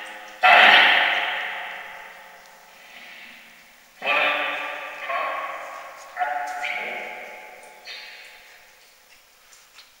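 Geobox spirit box putting out short voice-like fragments, about six of them, each starting suddenly and trailing off in a long echo; the loudest comes about half a second in. The uploader hears them as the words "Hey... hurry".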